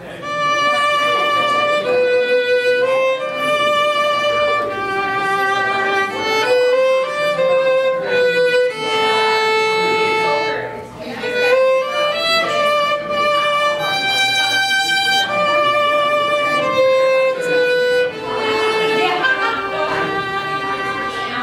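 Solo violin playing a slow phrase of held notes with vibrato, the notes changing about once a second, with a brief break about halfway through before the phrase goes on.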